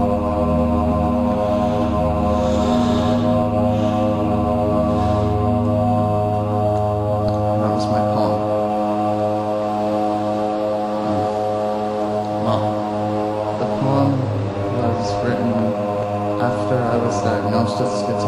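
Droning, chant-like music: a thick stack of steady held tones that runs on without a break, shifting only slightly in pitch.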